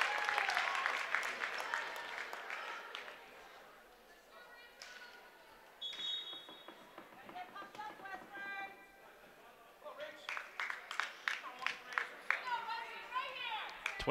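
Spectators in a gym cheering and applauding a point just scored, dying away over the first few seconds. Then scattered voices of players and spectators echo around the hall.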